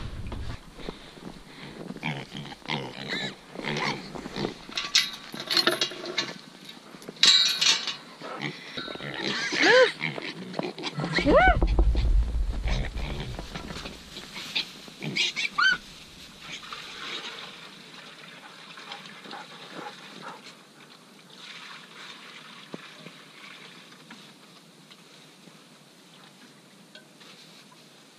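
Pigs grunting and squealing around a bucket of water, with a few short squeals in the middle, amid knocks and clatter. Quieter in the second half.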